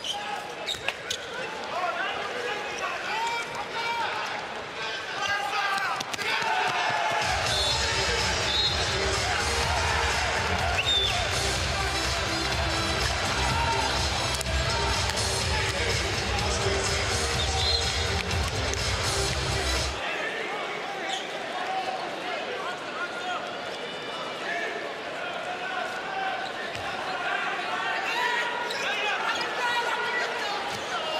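Handball match sound: the ball bouncing on the court amid the voices of a large arena crowd shouting and chanting. From about seven seconds in, a deep bass layer, likely music over the hall's speakers, joins the crowd for about thirteen seconds and then cuts off suddenly.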